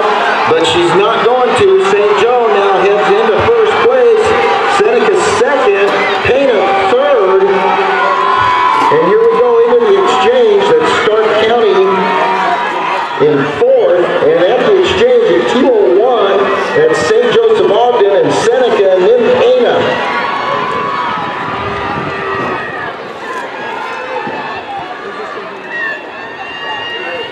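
A crowd of spectators shouting and cheering on relay runners: many overlapping voices, loud, easing off about twenty seconds in.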